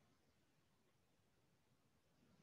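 Near silence: faint background hiss of a video-call recording.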